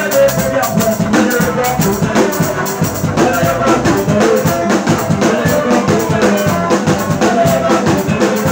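Live band music: an electric guitar played over a drum kit keeping a steady beat, loud throughout.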